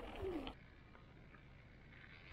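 Electric dirt bike motor whine falling in pitch as the bike slows, over tyre crunch on gravel. About half a second in, this cuts to faint, steady outdoor ambience.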